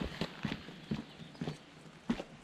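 Footsteps of hiking shoes on a gritty concrete path, a run of sharp steps close to the microphone that grow fainter near the end as the walker moves away.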